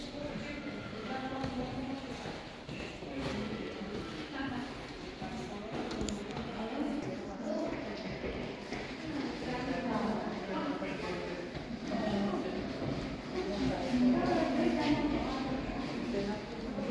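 Indistinct talking in the background, words not made out, going on throughout.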